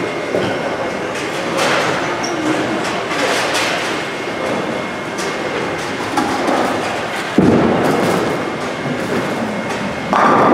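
Bowling-alley din: bowling balls rolling down the lanes with a continuous rumble, broken by a few brief clatters. About seven and a half seconds in, a ball drops onto the lane with a thud and a louder rolling rumble follows.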